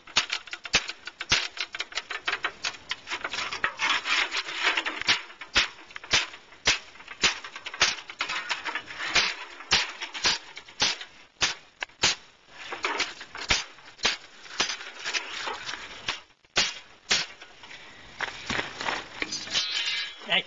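Repeated hammer blows on a piece of angle iron laid over a metal fin and copper tube on a wooden board, forming the fin around the tube. The strikes come irregularly, about two or three a second, with a short pause a few seconds before the end.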